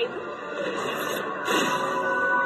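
Cartoon soundtrack playing from a television: music under a sci-fi powering-up sound effect as a giant magnet machine is switched on, with a whooshing swell about one and a half seconds in.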